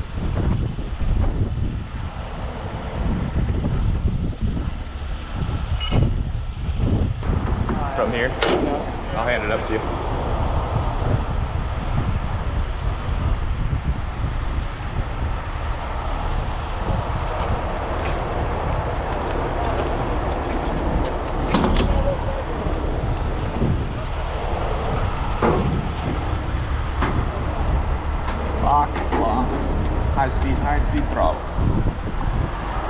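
Heavy diesel trucks running with a steady low rumble, mixed with wind on the microphone; brief voices about eight seconds in and near the end.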